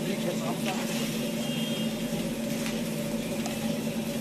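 Steady low hum with a hiss from a gas-fired tantuni griddle station, its burner flame burning under the domed steel griddle.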